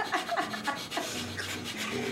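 Several people doing breath of fire, the kundalini yoga breathing exercise: rapid, rhythmic, forceful puffs of breath through the nose, driven from the navel.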